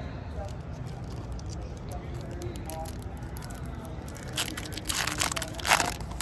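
Foil trading-card pack being torn open and crinkled: a few sharp rips of the wrapper in the last two seconds, over low steady background noise.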